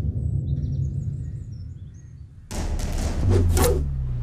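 Action-film soundtrack: a low rumble dies down to a lull with faint bird chirps, then about two and a half seconds in loud fight-scene score with drum hits and impact sounds comes crashing back in.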